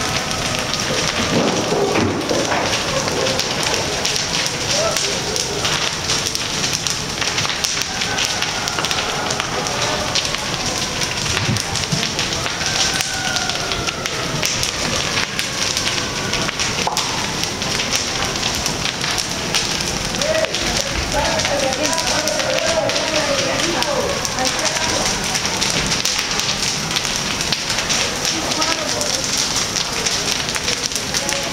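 Wooden houses fully ablaze, the fire burning loudly with dense, continuous crackling and popping.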